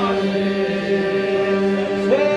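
Men singing Albanian Myzeqe polyphonic folk song: the group holds a steady low drone, the iso, while the higher lead line slides down and stops at the very start, leaving the drone alone.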